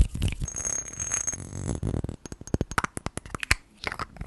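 Quick-fire ASMR triggers made by hands and small objects held right at a microphone: close rustling with a brief high ringing note in the first two seconds, then a fast run of sharp taps and clicks.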